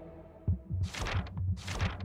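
Documentary soundtrack effects: a low pulsing beat starts about half a second in, with two short hissing swooshes around one second and near the end, marking the cut to the indictment papers.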